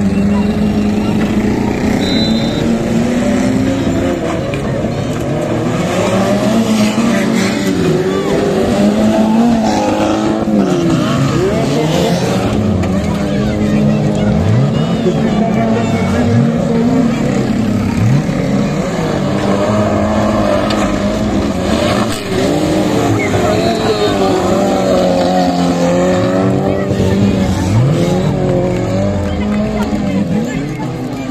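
Engines of several small stock cars racing on a dirt track, revving hard, with their pitch repeatedly dropping and climbing again as the drivers lift off and accelerate through the corners.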